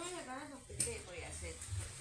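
Faint voices talking in the background, with no clear sound from the lime press.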